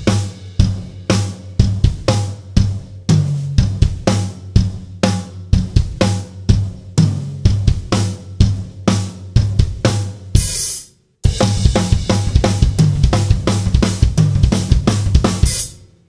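Acoustic drum kit playing a fast punk groove, the lead hand on the floor tom against snare backbeats and bass drum kicks, with a tom now and then in place of the snare. About ten seconds in it stops briefly after a cymbal crash, then starts again with denser strokes.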